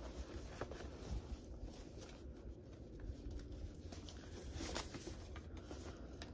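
Faint rustling and light scattered clicks of paper and packaging being handled as a book subscription box is searched through.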